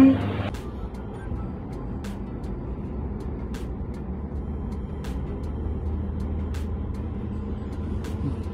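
Steady low rumble of a car idling, heard from inside the cabin, with faint regular ticks about every three-quarters of a second.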